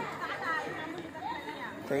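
Faint background chatter: several people talking quietly, no single clear voice.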